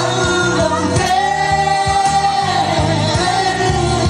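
A man singing live into a handheld microphone, holding long notes that bend in pitch, over musical accompaniment with a steady repeating bass line.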